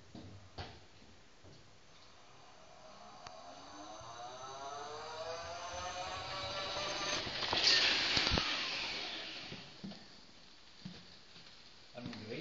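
Electric scooter's motor whining as it rides down a corridor, rising in pitch as it speeds toward the camera, loudest as it passes about eight seconds in, then fading away. A single knock sounds as it goes by.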